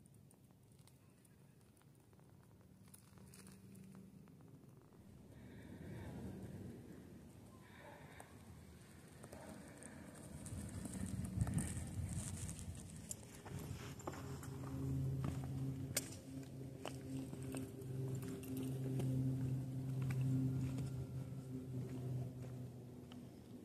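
Footsteps on a rocky, gravelly trail, with many short scuffs and clicks getting louder past the middle. From about the middle on, a steady low hum with a few overtones comes and goes underneath.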